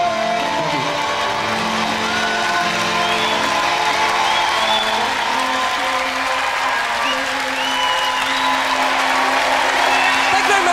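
The song's last guitar chord dies away in the first second, then a concert audience applauds and cheers, with a few whistles, while a low note keeps sounding underneath.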